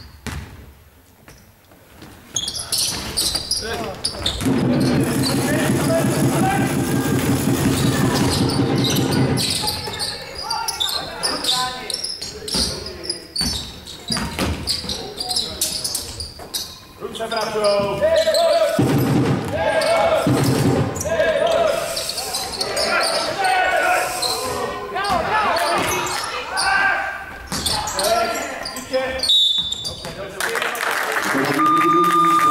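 Basketball game in a sports hall: a few bounces of the ball on the hardwood floor, then loud shouting and cheering from spectators. A steady drone runs for about five seconds, and near the middle come repeated shouts of "dobrý" ("good") and "bravo".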